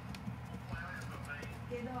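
A golden hamster scurrying over shredded-paper bedding, its small feet and claws making light, irregular clicks and rustles, over a steady low hum.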